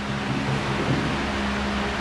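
A steady low hum with an even hiss over it.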